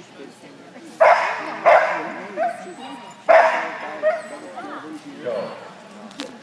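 A dog barking: three loud, sharp barks, about a second in, just after, and about three seconds in, with fainter yips in between and after.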